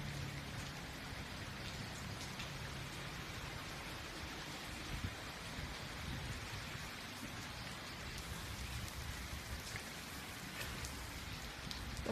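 Steady rain falling, an even hiss with a few faint drips now and then.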